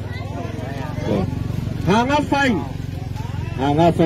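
People's voices calling out in several drawn-out calls over a steady, low motor hum with an even pulse.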